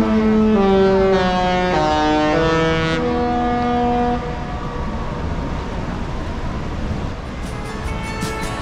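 A Disney cruise ship's musical horn sounds a short multi-note tune, chords of held notes stepping up and down, for about four seconds, then stops. Steady outdoor noise follows, with background guitar music coming in near the end.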